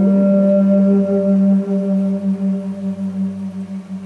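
A solo wind instrument holds one long, steady low note; the note wavers in loudness and fades over the last couple of seconds.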